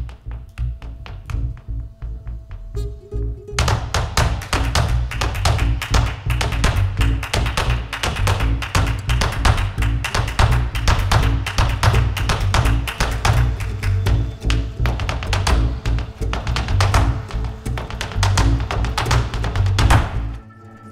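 Live flamenco music: double bass playing low notes with guitar, over a flamenco dancer's rapid footwork taps that become fast and dense about four seconds in.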